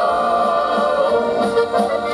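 Live accordion band music: two accordions and a keyboard playing a song together, with voices singing in harmony.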